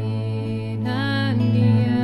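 Acoustic folk music: a steady low drone held throughout, with a pitched melody note that swells and bends about a second in.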